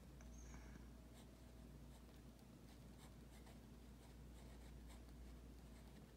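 Faint scratching of a pen writing on lined notebook paper, in short irregular strokes over a low, steady room hum.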